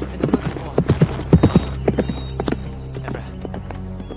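Horse's hooves galloping on a dirt road, the hoofbeats growing louder to a peak about a second and a half in, then fading away. Steady background music plays underneath.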